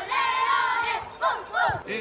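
A group of young boys shouting together in a victory celebration: one long, high held cry, then a couple of short whoops in the second half.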